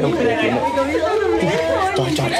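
Several people talking at once: indistinct Vietnamese chatter of voices.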